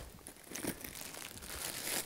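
Faint crinkling of a bag of small dried decorative berries as it is handled and opened for pouring.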